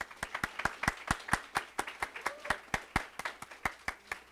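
Applause from a small audience, with one person's hand claps close to the microphone standing out sharply at about five a second. The clapping dies away near the end.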